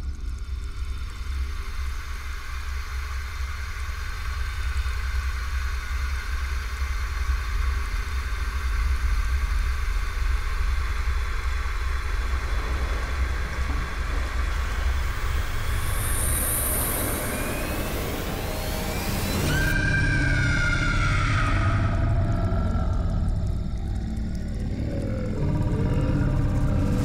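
Eerie horror-score sound design: a steady low rumbling drone, with rising sweeps building to a sudden shift about twenty seconds in, followed by wavering gliding tones.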